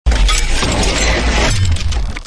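Logo-animation sound effect: it starts suddenly and loud with a dense crackling, shatter-like noise over a deep bass. The crackle thins out after about a second and a half while the bass holds.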